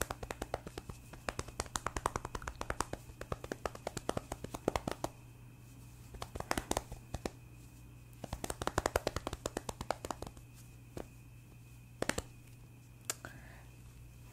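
Hands drumming a rapid drum roll of taps on a surface close to the microphone. The taps come in several fast bursts through the first ten seconds, then a few single taps near the end.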